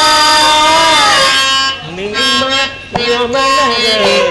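Harmonium holding a sustained reedy melody as stage-drama accompaniment, breaking off about two seconds in; a voice with sliding pitch follows.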